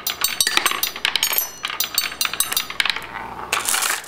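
Glass marbles clinking against short pieces of steel angle iron and against each other in a wooden marble machine: a quick run of sharp, ringing clinks in the first second and a half, sparser clinks after, and a softer rattle near the end.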